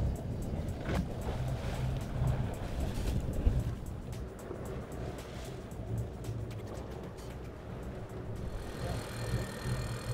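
Sportfishing boat's engine running steadily at low speed, a constant low hum, with background music over it.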